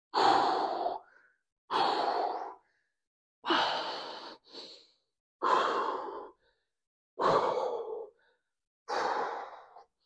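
A man's hard exhalations while straining through a set of dumbbell reps: six breath-outs, about one every 1.7 seconds.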